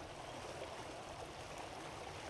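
Shallow river flowing past its snowy bank: a faint, steady rush of moving water.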